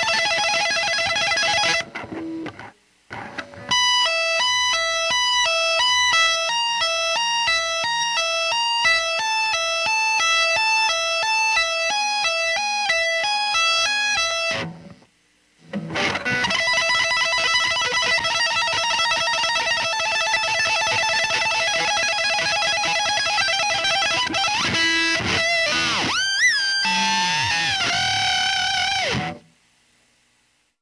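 Electric guitar playing a fast exercise pattern of rapidly repeating notes. It breaks off twice for about a second and ends with wide, swooping pitch bends.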